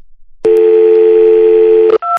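Telephone dial tone on a payphone handset, a steady two-note tone that comes on about half a second in and holds unchanged for about a second and a half, stopping just before a key is pressed.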